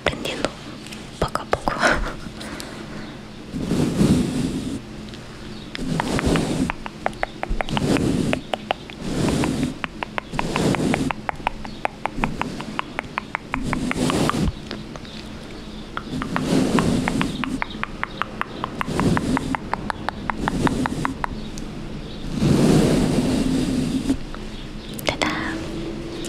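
Makeup brush bristles rubbed and swept across a foam-covered microphone in close-up mic scratching: a rough brushing stroke about every two seconds, with a stretch of fast, dense crackling in the middle.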